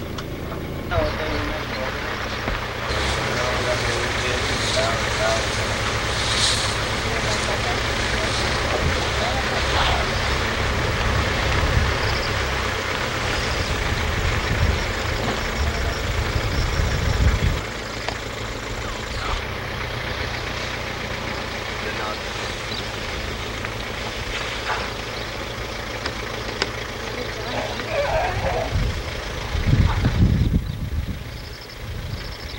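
Safari vehicle's engine running as it drives along the track, louder from about a second in and dropping to a lower, steadier run after about seventeen seconds. Faint voices near the start and the end.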